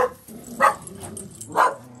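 Dog barking: a few short single barks about a second apart.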